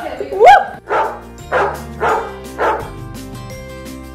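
A loud rising-and-falling yelp, then four short bark-like yelps about half a second apart, over background music with sustained notes.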